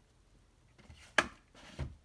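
VHS tape and its case being handled: a single sharp plastic click a little after a second in, then a brief rustle and a dull thump near the end.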